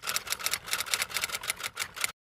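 Typewriter sound effect: a rapid, even run of key clicks as caption text types out letter by letter.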